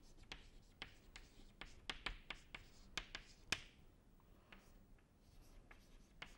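Chalk writing on a chalkboard: faint, quick taps and short scratches as letters and symbols are written, with a sharper tap about three and a half seconds in.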